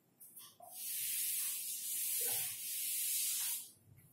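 Felt duster wiping a chalkboard: a steady hiss of rubbing that starts about a second in, swells in two long strokes and stops just before the end.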